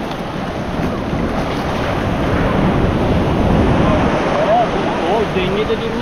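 Sea waves breaking and rushing in a steady roar of surf, swelling louder about three to four seconds in.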